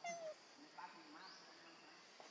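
A young monkey gives a short, high call that falls in pitch, followed by fainter short calls about a second later.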